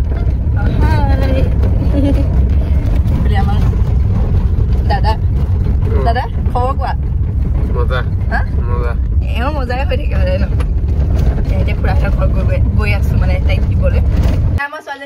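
Steady low road and engine rumble inside a moving car's cabin, with voices talking over it now and then.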